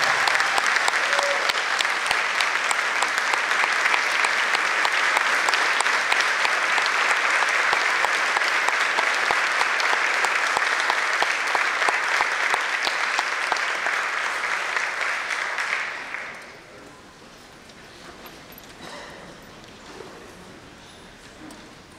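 Large audience applauding, a dense clapping that fades away about sixteen seconds in, leaving quiet room noise.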